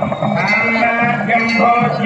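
Devotional aarti song: a voice holding long, wavering notes over instrumental accompaniment.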